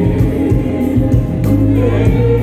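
Live soul band music with singing and a strong bass line, played loud over the PA.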